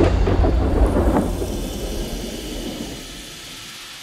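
Thunder rumbling deep and low, with some crackle in the first second or so, then slowly fading away.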